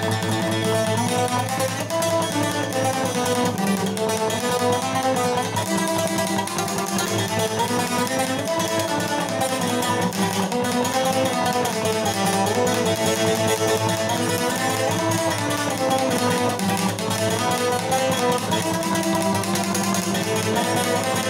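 Cretan lute (laouto) played with a plectrum, fast-picking a melodic line over a steady low drone.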